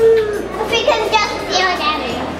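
A young girl's voice: one long held vocal sound at the start, then a few short high-pitched vocal sounds.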